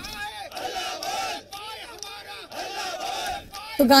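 A crowd of protesters shouting slogans together, in repeated bursts about once a second.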